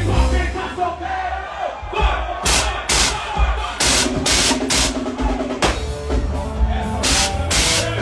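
Live band music played loud through a stage sound system: drum kit and bass, with a run of sharp drum and cymbal hits through the middle and latter part.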